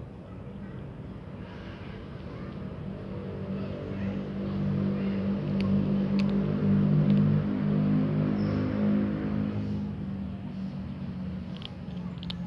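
A motor vehicle passing: its engine hum swells over several seconds, is loudest through the middle, then fades away.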